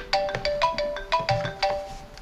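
Mobile phone ringtone: a quick, bright melody of short ringing notes, played through once and stopping just before the end, as an incoming call comes in.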